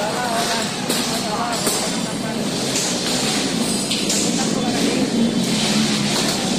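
Street ambience: traffic noise with motor vehicles running and indistinct voices of people talking in the background.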